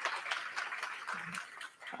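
Audience applauding: a dense, fairly faint patter of many hand claps.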